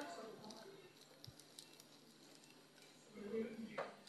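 Faint, low speech near the start and again near the end, with quiet room tone and a few faint clicks between.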